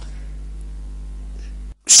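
Steady low electrical hum in the sermon's audio, with one sharp click right at the start. The hum cuts off suddenly just before speech resumes at the very end.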